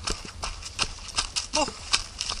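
A runner's footfalls on a dirt trail covered in dry leaves, nearly three steps a second in an even rhythm, with a short grunt near the end.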